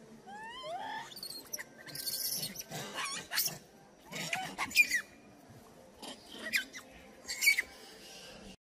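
Macaque monkeys squealing: a rising call in the first second, then a run of short, high squeaks that sweep up or down, the loudest about halfway through, with a brief rustle around two seconds in.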